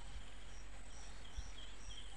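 Rural outdoor ambience: faint, high-pitched chirping in short repeated notes, with a higher piping note about twice a second, over a low steady rumble.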